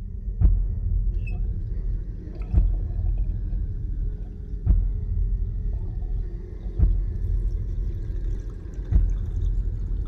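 Dark, low rumbling drone from a film soundtrack, with a sharp low hit about every two seconds, five times in all.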